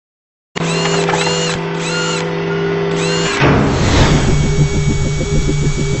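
Animated logo intro sound effects: after a brief silence, a steady electronic buzz with short arching chirps repeating about twice a second, then from about three and a half seconds a fast, even pulsing rhythm.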